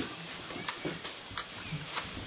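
A pause in a talk: faint room noise with a few sharp clicks, about three across two seconds.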